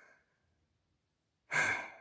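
Near silence, then a man's short breathy sigh about a second and a half in, fading out quickly.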